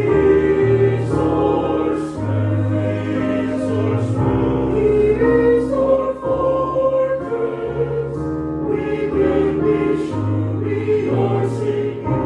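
Choir singing a slow hymn with accompaniment, the words "He is our strength, He is our fortress, we are secure", in long held notes over sustained low bass notes.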